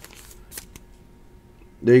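A few faint, brief plastic rustles and clicks as a trading card is slid into a clear rigid plastic top loader. A man's voice starts near the end.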